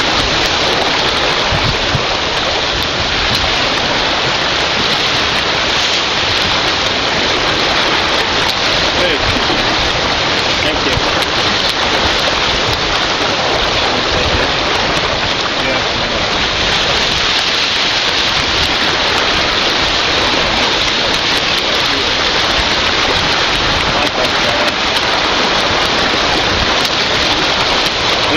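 Steady rushing of wind and water aboard a racing sailboat under way: an even hiss with no breaks or pitched sounds.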